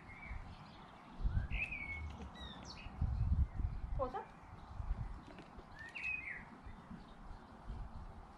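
Small birds chirping now and then, short calls that bend in pitch, with low rumbling thuds about a second in and again around three seconds.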